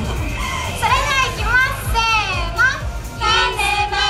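Several young women's voices amplified through PA speakers, talking and calling out with long, drawn-out rises and falls in pitch over a steady low rumble.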